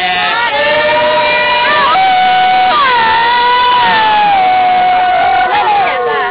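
A group of Dawan (Atoin Pah Meto) people singing a traditional work chant sung to spur on communal field clearing. Several voices overlap in long held notes that slide from one pitch to the next.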